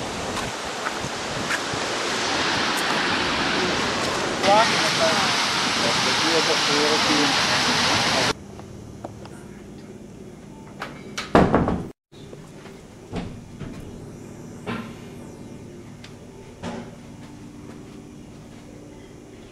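A steady, loud rushing noise with a few short chirps over it, which cuts off suddenly about eight seconds in. Quiet room tone follows, with scattered clicks and knocks and one louder burst a few seconds later.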